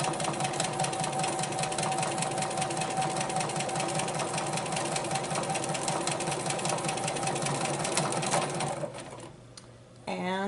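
Bernina 440 domestic sewing machine stitching steadily at speed during free-motion ruler quilting: a steady motor whine with rapid needle strokes. Just under a second before the end it winds down and stops, because the thread has broken.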